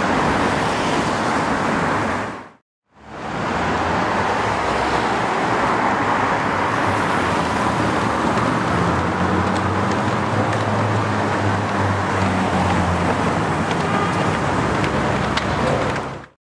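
Street traffic with a car driving off, then, after a short cut to silence, a Ferrari 458's V8 running steadily as the car rolls slowly past, its engine note plainest in the middle of the stretch.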